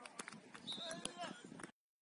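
Faint outdoor football-pitch sound: distant players' voices and scattered light clicks and knocks over a low hiss. It cuts off abruptly to dead silence near the end.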